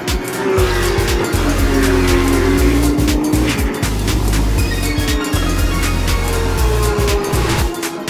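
GT race car engines passing at speed, their pitch falling and rising as the cars go by, mixed with background music that has a heavy bass and a steady beat.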